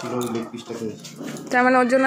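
A Labrador whining in drawn-out, pitched cries, with a loud, long, steady whine starting about three-quarters of the way in.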